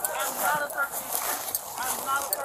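A raised voice with no clear words, with the crunch of footsteps in snow and the rustle of clothing against a body-worn camera.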